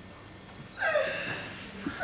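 A woman's theatrical wailing cry: one falling wail about a second in, then a long held note starting near the end.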